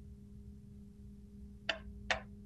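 Faint steady hum made of two low tones, with one short click about three-quarters of the way through.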